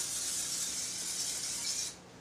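Aerosol olive-oil cooking spray hissing steadily for about two seconds as it coats a baking dish, cutting off abruptly near the end.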